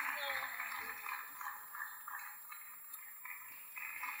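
Faint, indistinct voices off the microphone, with the murmur of a large hall, dying down over the few seconds.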